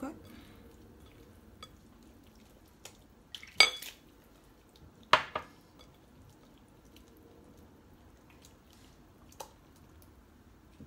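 Hands working wet barley dough in a glass bowl, faint, broken by two sharp clinks of glass about three and a half and five seconds in, and a few lighter taps.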